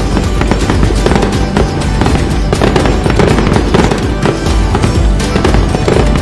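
Festive music with the crackle and pops of firecrackers layered over it throughout.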